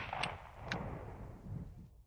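The dying tail of a punk rock recording just after its final hit: a faint low ring-out of the band with two small clicks, then the track cuts off into silence near the end.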